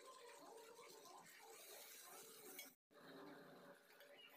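Near silence, with only faint, indistinct background sound. The audio cuts out completely for a moment about three quarters of the way through.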